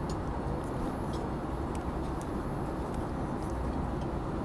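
Airliner cabin noise in flight: a steady low rumble and rush that does not change, with a few faint light ticks over it.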